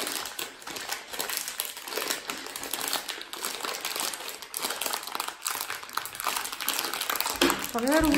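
Plastic sweets packet crinkling continuously as it is squeezed, twisted and pulled by hand in an attempt to tear it open.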